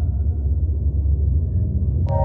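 Steady low rumble of a car in motion, heard from inside the cabin: road and engine noise.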